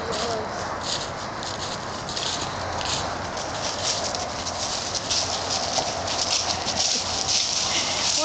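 Footsteps of several hikers crunching and shuffling through dry fallen leaves on a woodland trail: a continuous, irregular rustle made of many short crackles.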